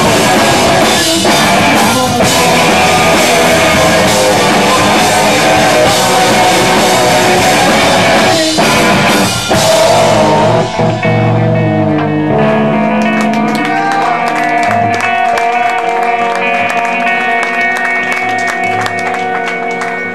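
Live rock band playing loud, with electric guitars, drums and vocals. About halfway through the dense full-band sound drops away, leaving held guitar chords ringing on.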